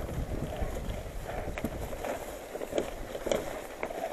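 Mountain bike riding down a grassy single track: a steady rumble of tyres over the trail with wind on the microphone and scattered sharp clicks and rattles from the bike.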